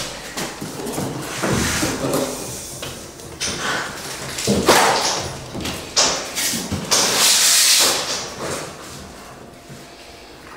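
Irregular thumps, knocks and scraping rustles as a capuchin monkey climbs and jumps on wire grid panels fixed over plywood on the wall. The knocks come thickest in the middle of the stretch, with a longer hissing scrape near the end, and fade out at the close.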